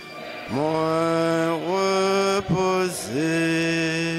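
A man's voice chanting a liturgical prayer on long, level held notes. Each phrase slides up into its note, with short breaks about a second and a half in and again around three seconds in.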